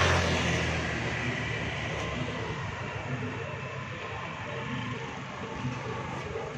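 Night street traffic: a passing motor vehicle's engine hum fades away over the first couple of seconds, leaving a steady background noise of the street.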